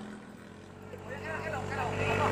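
A katinting racing longtail boat's engine drone fades off as the boat runs away in the distance. From about a second in, excited shouting voices rise over a faint engine hum.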